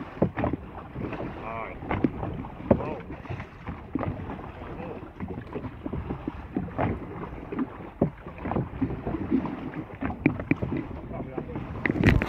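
Paddling an open boat at sea: paddle strokes splashing and irregular knocks against the boat's side, with wind on the microphone.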